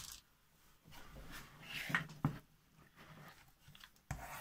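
Faint handling of a ThinkPad X1 Carbon laptop as its lid is tipped back flat on a desk: light scraping and taps, with a sharp click just after two seconds in.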